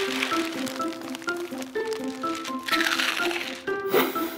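A plastic packet crinkling and crackling in someone's hands, in two short bouts, one at the start and one about three seconds in, over background music with a melody of short, stepping notes.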